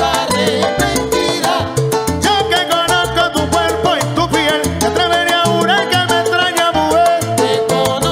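Salsa band playing live: a dense, driving percussion rhythm with bass and melodic lines over it.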